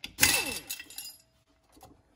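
Power driver with an 8 mm socket backing out a stator-coil screw from an aluminium generator cover: a short burst of whirring and metallic rattle that falls in pitch and fades out by about a second in, followed by a faint clink near the end.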